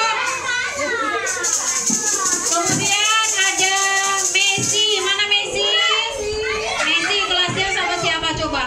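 A roomful of young children's voices at once, high-pitched chatter and singing, mixed with music. A rattling, shaker-like hiss runs through the middle few seconds.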